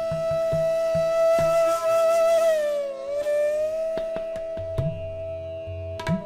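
Bansuri (bamboo flute) holds one long note in Raag Malkauns. About halfway through it slides down and glides back up to the same pitch. Tabla strokes, with low bass-drum thuds, accompany it at a slow pace.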